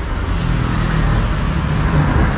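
Steady road traffic noise: the low rumble of a motor vehicle going by.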